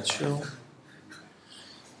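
A man's voice briefly at the start, then quiet room noise with a faint click about a second in.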